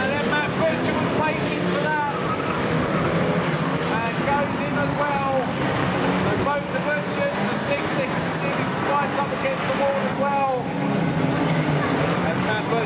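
Several banger race cars' engines revving together, their pitches rising and falling over one another as the cars race and jostle round the track.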